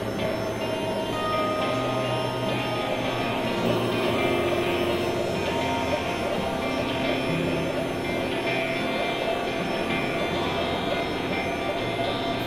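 Experimental electronic synthesizer drones and noise: layered sustained tones that step to new pitches every second or two over a dense, hissing wash, steady in loudness throughout.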